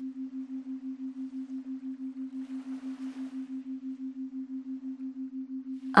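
A steady, low pure tone that pulses evenly about seven or eight times a second: a pulsed meditation backing tone.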